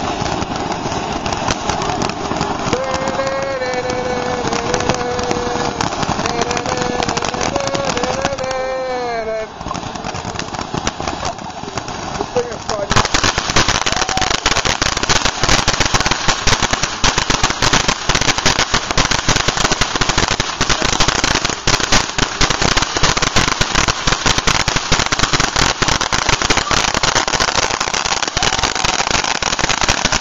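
Ground fountain firework spraying sparks with a steady hiss. About 13 s in, it breaks into dense, loud crackling that keeps going.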